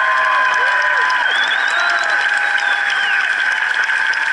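Concert crowd applauding, heard up close through a smartphone microphone, with long shouts rising and falling in pitch over the clapping.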